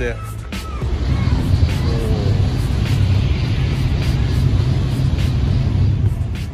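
Shinkansen train passing on the viaduct overhead: a loud, deep rumble that builds about a second in and then holds steady. Background music with a steady beat plays under it.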